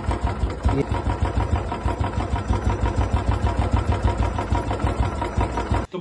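Royal Enfield Classic 350 Twinspark single-cylinder engine idling with a loud, quick, even clatter, before its engine rebuild. The noise is described as a 'khatar-pitar' rattle, like someone playing tabla inside the engine. It cuts off suddenly near the end.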